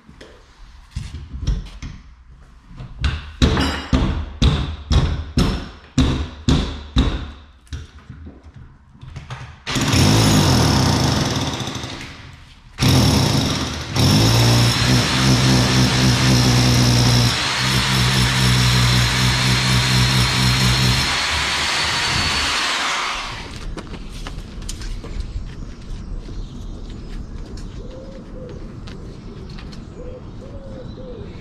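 Titan SDS Plus hammer drill with a long bit drilling through the brick cavity wall. First comes a run of sharp knocks about two a second. Then the drill runs briefly, stops, and runs steadily for about nine seconds with a low hum and a high whine before stopping.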